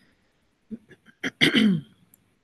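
A woman clearing her throat: a few short rasps, then a longer, louder one about a second and a half in that drops in pitch.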